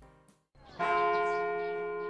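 A church bell struck once, about three-quarters of a second in, after a brief near silence. It keeps ringing with several steady tones that slowly fade.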